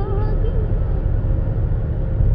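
Steady low rumble of a car's engine and tyres heard from inside the cabin while driving along a highway.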